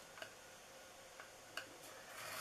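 Near silence, broken by three faint ticks of a scoring stylus tip against a paper-crafting scoring board. The last tick, about a second and a half in, is the clearest.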